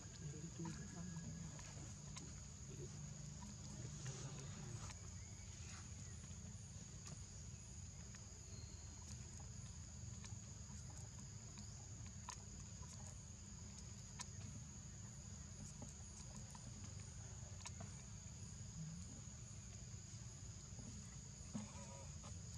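Forest insects droning steadily with a thin high-pitched tone, over a faint low rumble. A few light ticks or rustles come now and then.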